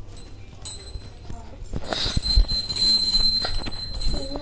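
Knocks and low thumps of a phone being handled by a small child, with the lens covered. A steady high-pitched ringing tone comes in about a second in.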